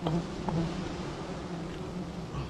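Honeybees buzzing around a wild honeycomb as it is taken down into a plastic bag: a steady low hum, with a light click near the start and another about half a second in.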